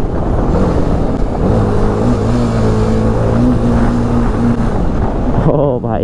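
A BMW sport motorcycle's engine under way in traffic. There is a short blip of revs about half a second in, then the note climbs and holds steady for about three seconds before dropping off near the end. Wind rush is heard on the microphone.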